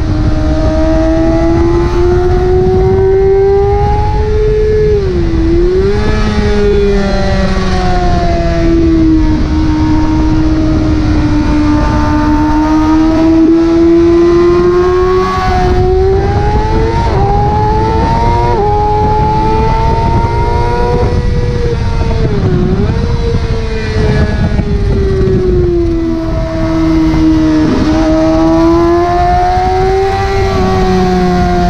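Racing motorcycle engine at high revs, heard from an onboard camera at speed on a track: its pitch rises and falls steadily with throttle through the corners, with a few sharp dips and jumps as gears are changed. Low wind rush sits under the engine.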